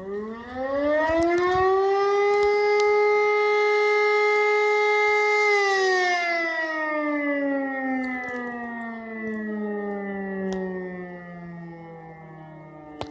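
E57 electromechanical siren sounding the test signal. It winds up in pitch over about two seconds, holds one steady tone for a few seconds, then winds down slowly once the power is cut. The uploader notes that its rotor runs the wrong way round.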